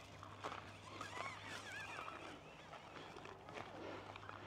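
Faint outdoor ambience with distant birds calling: a cluster of faint, wavering calls about a second in, and a few soft footfall-like clicks.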